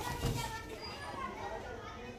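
Indistinct background voices at a low level, several people talking at once with no clear words.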